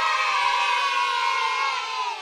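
A group of children cheering one long, held 'yay', dipping slightly in pitch near the end.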